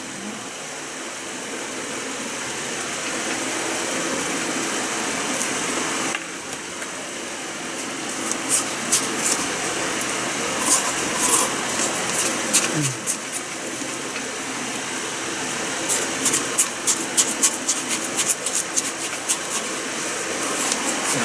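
A spoon scraping and clicking in a plastic cup of melon shaved ice, in bursts of quick clicks about eight seconds in and again over the last four seconds, over a steady background whir.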